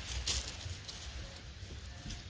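Faint rustling and crackling of dry leaves and grass as a puppy moves through them, with a few soft clicks early on over a low steady rumble.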